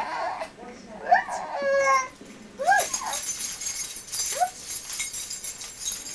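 A young baby vocalizing in several short, high coos and whimpers that rise and fall in pitch. A steady high hiss comes in about halfway.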